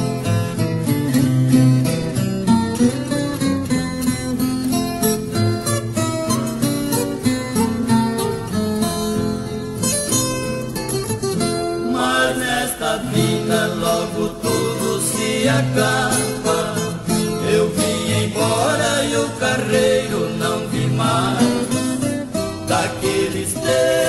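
Instrumental interlude of a Brazilian música caipira song: plucked acoustic strings, a viola caipira with guitar, play the melody over a steady rhythm between the sung verses.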